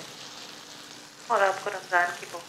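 Oil sizzling steadily in a frying pan.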